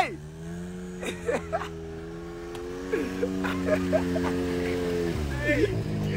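A vehicle engine running steadily, its pitch creeping up slightly and then dropping about five seconds in, with a few brief distant voices over it.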